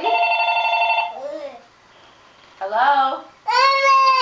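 A toddler's high voice: one long, steady held note in the first second, then two short rising calls near the end.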